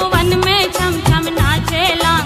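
Languriya devotional folk song: a woman singing with wavering, ornamented notes over a steady drum beat.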